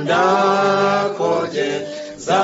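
Unaccompanied voices singing a slow, chant-like phrase of long held notes, breaking off briefly twice in the second half.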